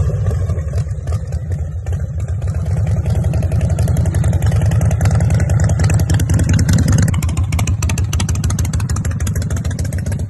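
Custom Harley-Davidson chopper's V-twin engine running with a fast, uneven exhaust beat as the bike moves off at low speed.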